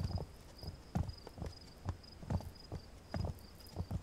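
Slow, hollow knocking footfalls, about two or three a second and unevenly spaced.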